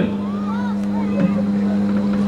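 A steady low hum on one unchanging pitch, with a few faint rising-and-falling tones in the first second.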